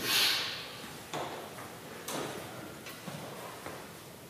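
A short hiss at the start, then four light knocks or clicks about a second apart, with a little room echo.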